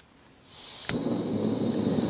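Campingmoon XD2F pressure-regulated canister stove: gas hisses from the burner once the valve is opened, rising in level. Just under a second in comes a sharp click from the piezo igniter, and the burner lights and burns noisily and steadily.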